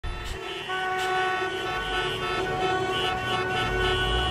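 A horn sounding a steady chord of several tones, starting about half a second in and held without a break.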